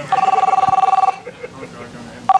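Telephone ringing for an incoming call: one trilling two-tone ring about a second long, right at the start, then a pause before the next ring.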